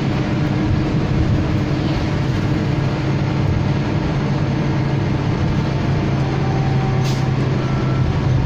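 Inside a moving 2005/06 Nova LFS low-floor diesel city bus: the engine drones steadily under continuous road and tyre noise.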